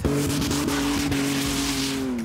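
Pickup truck's engine held at high revs, a steady engine note over the hiss of its tyres spinning and spraying snow, as a stuck truck tries to drive itself free.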